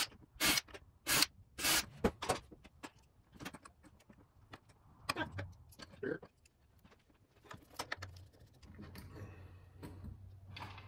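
Small hardware, casters and screws, being handled on a wooden workbench: four sharp clacks in the first two seconds, then scattered light clicks and knocks.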